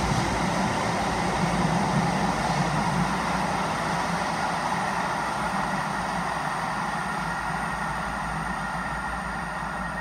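Tyne and Wear Metrocars, an electric train, running away from an underground platform into the tunnel, its steady running noise slowly fading.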